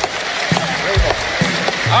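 Crowd cheering and applauding in an old recording of a speech, heard under the band's music: a few low drum thumps, then a sustained bass note comes in near the end.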